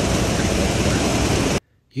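Rice mill machinery running: a loud, steady wash of noise with a low hum underneath, cut off abruptly about a second and a half in.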